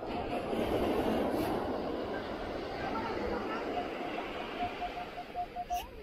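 Sand rushing as it is dug and sifted through a metal beach scoop, a grainy noise that starts suddenly and tails off. Over the last two seconds a metal detector gives a run of short beeps at one steady pitch, about four a second, as it is swept over the target again.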